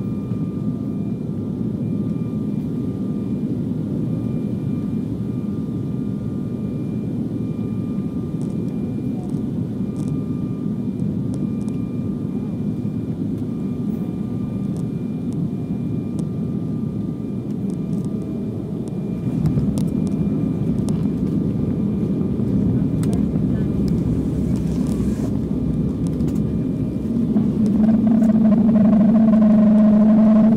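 Cabin noise of an Embraer 195 jet on final approach and landing: a steady rumble of its GE CF34 turbofans and the airflow. The rumble deepens and grows louder about two-thirds of the way through. Near the end a louder, steady engine drone sets in as the engines spool up.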